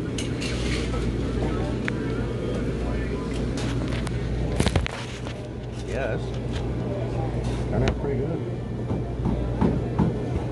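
Restaurant dining-room background: other diners' voices chattering indistinctly over a steady low hum, with one sharp click a little under five seconds in.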